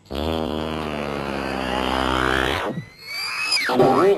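Cartoon sound effects for a pancake falling from the ceiling onto a face. A long, low, buzzy held sound lasts about two and a half seconds. Then a whistle rises and drops sharply into a loud splat near the end as the pancake lands.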